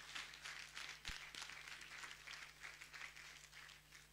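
A congregation clapping hands, faint and uneven, thinning out toward the end.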